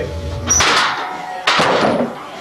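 Two loud clattering knocks of gym equipment about a second apart, each fading quickly, as the loaded barbell is handled at the squat rack.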